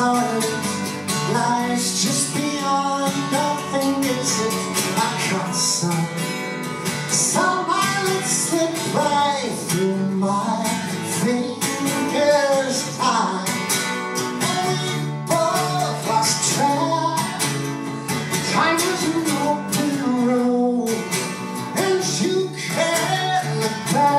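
A man singing a folk song, accompanying himself on a strummed acoustic guitar.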